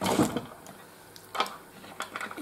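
Soft handling sounds of glass beads and a beading needle on a cloth-covered table: a short rustle at the start and a single small click about one and a half seconds in.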